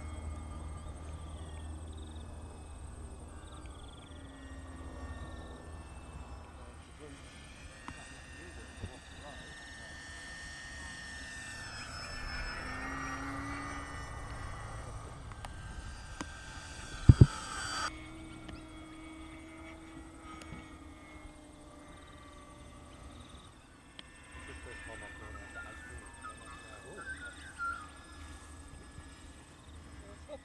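Radio-controlled model airplane's motor and propeller whining as it flies past, the pitch wavering, swelling and then dropping as the plane passes close. A sharp thump about two thirds of the way in, and the whine cuts off suddenly just after it.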